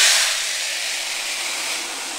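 Small gravel poured from a plastic pitcher into a glass bowl: a steady rushing hiss of grains, loudest at the start and gradually easing.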